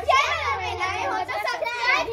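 Several young children's voices together, loud and high-pitched.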